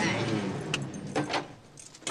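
A car engine running low and fading away over the first second and a half, with a few light metallic clicks.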